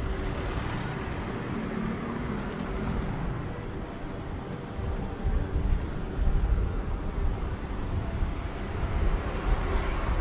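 Street traffic: a pickup truck's engine hum as it drives past close by at the start, over the steady noise of other cars on the road. A heavier low rumble comes midway.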